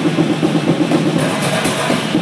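Two drum kits played together in a fast, dense run of rapid drum strokes, with cymbals ringing over them and growing brighter in the second half.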